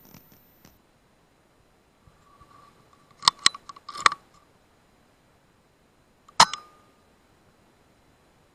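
A few sharp mechanical clicks a little over three seconds in and again about four seconds in. One louder click with a short ring comes about six and a half seconds in.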